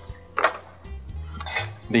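Two short knocks with a clink, about half a second and a second and a half in, as a cardboard bottle tube is set down on a bar counter. Soft background music runs underneath.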